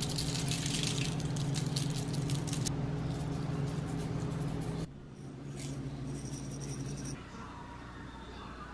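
Seasoning shaken from a shaker jar over sweet potato slices on a foil-lined baking sheet: rapid rattling shakes for about the first three seconds, then a shorter bout of shaking about six seconds in. A steady low hum runs underneath.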